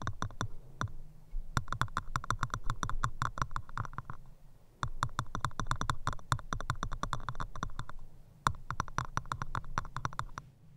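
Rapid, crisp clicking and tapping very close to the microphone, an ASMR ear trigger, coming in quick runs with brief pauses about a second in, just after four seconds, and around eight seconds.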